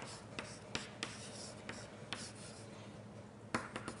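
Faint writing on a lecture board: a series of irregular light taps and scratches.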